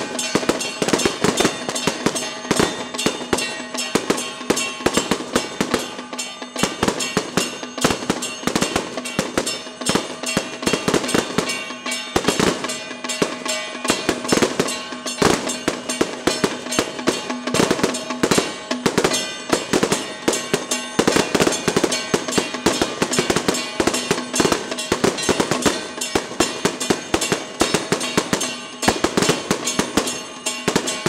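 Loud temple-procession music with drums and percussion over a few held tones, packed with dense, irregular sharp cracks like a string of firecrackers going off.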